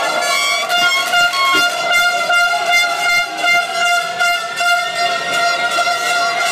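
Fans' horns sounding a steady drone of a few held notes together, over the noisy bustle of a celebrating street crowd.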